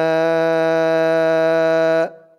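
A man's voice holding one long 'aa' vowel at a steady pitch: the drawn-out madd on 'mā' (مَآ) before 'alfaynā' in Quran recitation, a madd munfasil stretched over several counts. It stops abruptly near the end.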